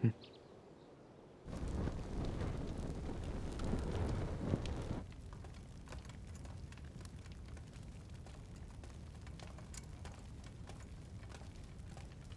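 Fire burning in open braziers: a rumble with crackling that starts suddenly and is louder for a few seconds, then settles about five seconds in to a steadier, fainter crackle with scattered small clicks.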